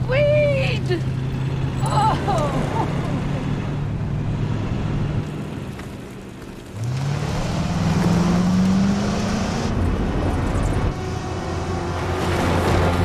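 Vehicle engine running steadily, then a car engine revving up from about seven seconds in, its pitch rising over a few seconds, with a hiss of tyres spinning on dirt.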